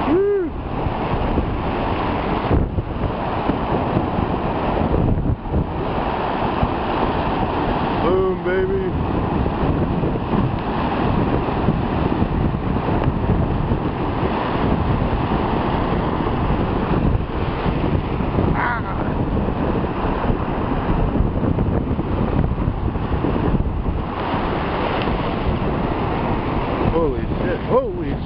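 Ocean surf breaking and washing up the shallows in a steady rush, with wind buffeting the microphone.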